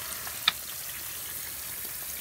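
Stream of water from a frog-shaped spitter fountain splashing steadily into a small pond, an even hiss, with one brief click about half a second in.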